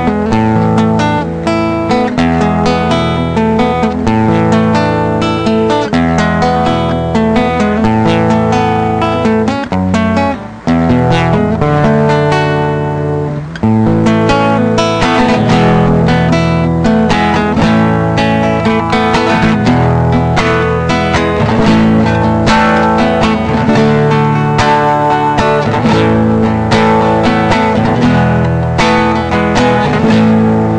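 Instrumental music led by strummed acoustic guitar, with a brief drop in level about ten seconds in.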